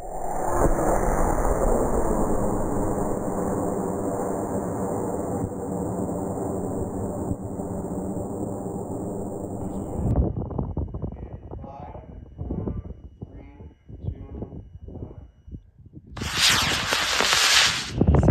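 A high-power model rocket motor ignites about two seconds before the end and burns with a loud rushing noise as the rocket climbs off the pad. Before it, a loud steady rushing with a hum stops abruptly about ten seconds in, followed by faint voices.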